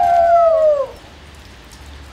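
A wolf howl: one long call that slides slowly down in pitch and ends about a second in.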